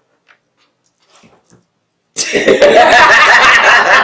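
Two women bursting into loud laughter together about two seconds in, after a near-quiet stretch.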